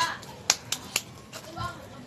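Loose rocks knocking together as stones are set along the edge of a garden bed: three sharp clacks in quick succession between about half a second and one second in.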